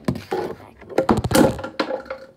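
Plastic slime tubs clattering and knocking against a wooden desktop as they are shuffled around. A quick run of knocks is loudest about a second in, with one more knock near the end.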